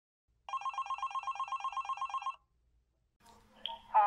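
Electronic telephone ringer sounding one trilling ring of about two seconds.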